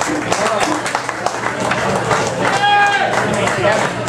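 Club audience talking and clapping in scattered claps once the band has stopped playing, with a short held call about two and a half seconds in.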